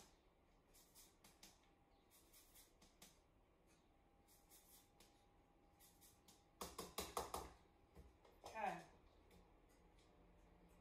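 Lime being zested over a cup of crema: a few faint grating strokes, then a louder cluster of quick strokes about seven seconds in. Shortly after, a brief falling vocal sound from a woman.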